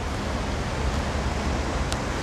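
Steady rushing outdoor noise over an unsteady low rumble.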